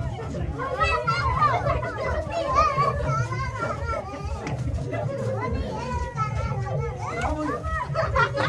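Children and adults shouting, laughing and chattering over one another in play, the high children's voices on top, over a steady low rumble.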